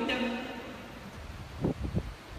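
A man's voice through a microphone and PA in an echoing hall, ending just after the start and dying away into a short pause, with a few brief soft low thumps near the end.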